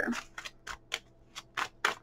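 A deck of tarot cards being shuffled by hand: a run of short, crisp card clicks, several a second and unevenly spaced.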